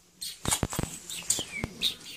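Short, high chirps of a small pet bird, mixed with several sharp clicks and knocks.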